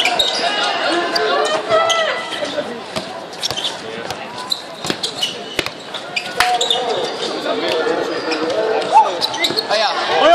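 A basketball bouncing on a hard court, with scattered sharp thuds at an irregular pace, under the voices of spectators chatting around it.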